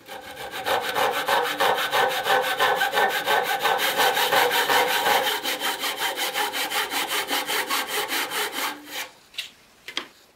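Hand saw cutting through a turned wooden spindle clamped in a bench vise: fast, even back-and-forth strokes, several a second, that stop shortly before the end as the piece is cut off.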